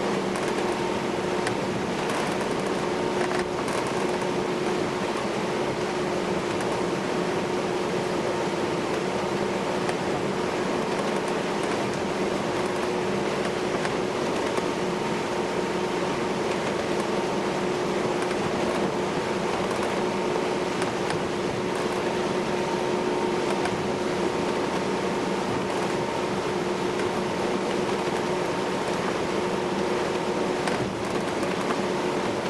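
Steady drone inside the passenger cabin of a ferry underway, the engines and ventilation running with a constant low hum and no change in pitch.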